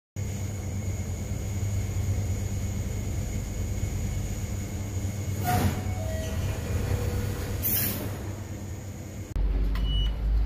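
Passenger lift running in its shaft, heard through closed landing doors: a steady low rumble with a faint high whine, and two brief whooshes around the middle. Near the end a louder low rumble sets in.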